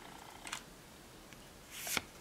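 Faint handling of trading cards: a short swish of a card sliding about half a second in and a longer one near the end, over quiet room tone.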